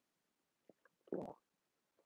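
A single short swallow, a gulp in the throat, about a second in, after a drink from a mug. Two faint mouth clicks come just before it.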